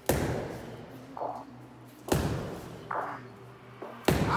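Weighted Driveline plyo balls thrown hard into a concrete block wall: two loud thuds about two seconds apart, each dying away with a short echo, with softer knocks between them.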